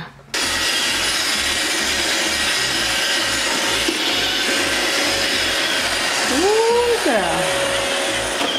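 An iRobot Roomba robot vacuum running, its motor and brushes making a loud, steady whirring that cuts in abruptly.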